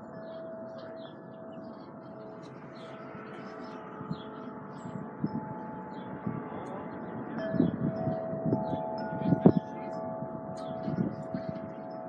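Wind chimes ringing, several held tones sounding together, with a cluster of louder strikes about eight to nine and a half seconds in.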